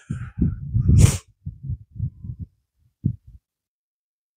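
A man's short laugh trailing into uneven breathy exhalations, with one sharp noisy breath through the nose about a second in, over low rumbling bursts on the microphone. The sound cuts off abruptly about three and a half seconds in.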